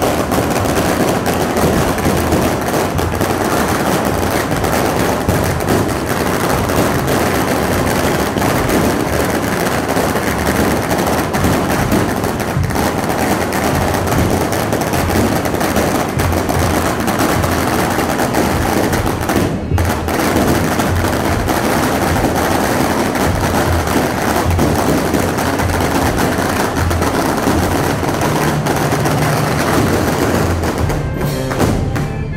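A long string of firecrackers going off in rapid, continuous crackling bangs.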